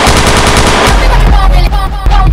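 Jersey club remix: a very fast rattling roll with the bass dropped out, over a chopped, pitched sample. About halfway through, the heavy bass-kick beat comes back in.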